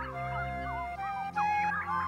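Background film music with held low notes, mixed with short chirping, squawking bird calls that turn louder about a second and a half in, just after a sharp click.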